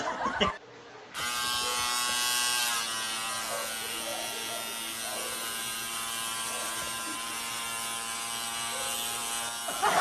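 Electric hair trimmer buzzing steadily as it trims at a man's forehead hairline, starting about a second in after a short gap and dropping slightly in level about three seconds in.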